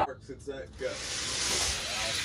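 Die-cast Hot Wheels cars rolling down the orange plastic drag-strip track, a steady hiss that builds from about a second in.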